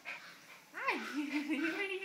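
Small dog whining: a sharp rising-and-falling whimper about a second in, running straight into a long wavering whine.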